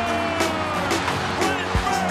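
Music with held tones and drum hits.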